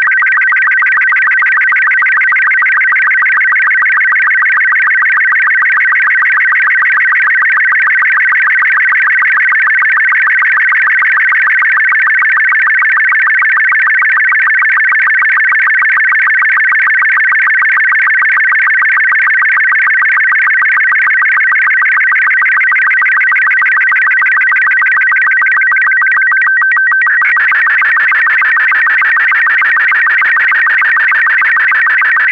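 Slow-scan TV image being sent in Robot 36 mode, played loud from a phone's speaker: a high, rapidly warbling electronic tone with a fast, even ticking from the scan lines. Its texture shifts a little after 26 seconds as it reaches the lower part of the picture.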